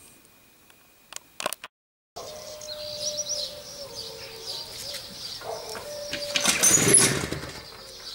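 The single-cylinder two-stroke engine of a Jawa Babetta 210 moped is turned over with a push on the pedal, in a short, loud burst near the end. It does not start. Birds chirp in the background.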